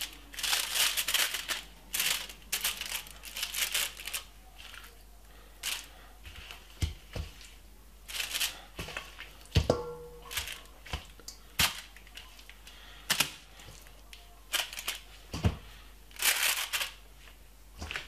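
Aluminium foil lining a baking tray crinkling and rustling in short, irregular bursts as raw marinated chicken pieces are laid onto it, with a few sharp clicks.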